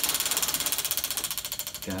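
A spinning prize wheel's clicker flapping against the pegs on its rim: a rapid, even run of clicks that gradually slows as the wheel loses speed.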